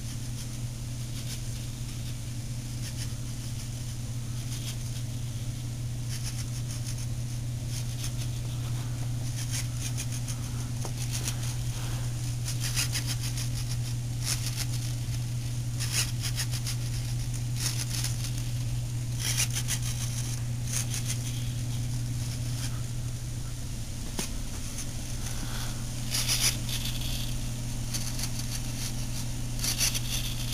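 RC model servos driving the ailerons in short bursts of high buzzing and clicking, again and again, over a steady low hum.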